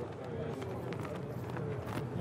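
Faint outdoor background noise from an open microphone, with indistinct distant voices.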